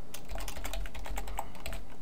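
Typing on a computer keyboard: a quick run of keystrokes that stops near the end.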